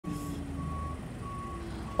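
Repeating electronic beeps, each about half a second long at one steady pitch, coming about three times in two seconds over a low rumble.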